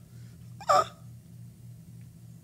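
A man's single brief "ah" about three-quarters of a second in, over a faint steady low hum.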